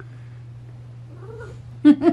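A hairless cat gives one short, faint meow about one and a half seconds in, over a faint steady low hum. A woman's laugh breaks in near the end and is the loudest sound.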